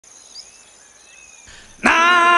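Faint animal calls, then near the end a man's voice suddenly breaks in loud on a long held chanted note, the opening call of a Zulu chant.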